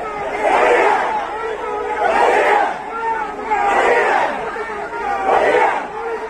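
A large crowd chanting a protest slogan against the police in unison, one shouted phrase about every one and a half seconds.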